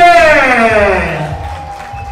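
The dance music over the hall's sound system breaks off: its bass drops out and a pitched sound glides steadily down over about a second and a half, fading. A faint steady tone holds from about a second in.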